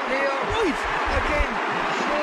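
Excited radio commentary voices over the steady noise of a large stadium crowd.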